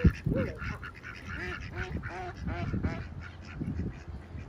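A group of ducks quacking repeatedly in short calls, with a brief thump right at the start.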